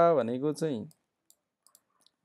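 A man's voice speaking for just under a second, then quiet broken by three or four faint, short clicks.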